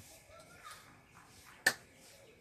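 A single sharp snap or click about three-quarters of the way in, over a faint background.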